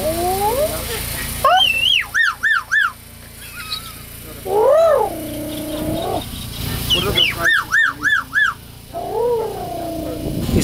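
An animal calling: short high notes that rise and fall, in quick runs of three or four, twice, with a longer drawn-out call between them.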